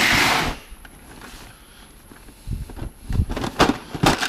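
Items being rummaged through in a plastic storage tote: a loud rustle at the start as plastic bags are handled, then a few light knocks and clicks of objects being moved near the end.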